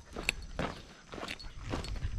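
A hiker's footsteps, a run of short steps a few tenths of a second apart. There is one brief high chirp about a third of a second in.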